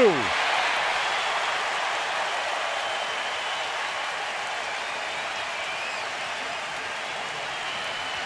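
A ballpark crowd cheering and applauding a home-team double play, slowly dying down.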